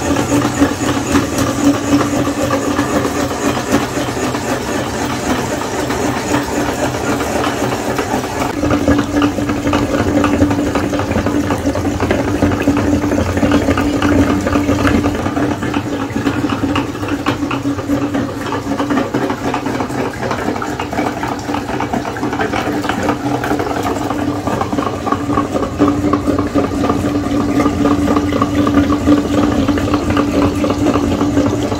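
A motor running steadily, with a constant hum and a rattling texture; the hum grows stronger about eight seconds in.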